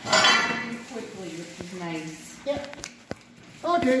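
Cattle mooing: a loud call just after the start, then a lower, wavering one around two seconds in. A few light clinks come from the chains on a plastic calf sled.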